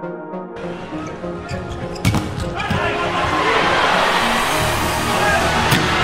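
A short synth music phrase cuts off about half a second in. Arena crowd noise follows, with a sharp volleyball strike about two seconds in. The crowd swells through the rally, and another ball strike comes near the end.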